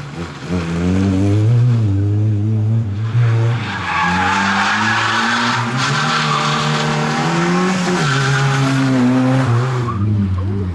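Opel Corsa rally car's engine revving hard, its pitch rising and falling as it is driven through tight turns on tarmac. From about three and a half seconds in, the tyres squeal for several seconds as the car slides.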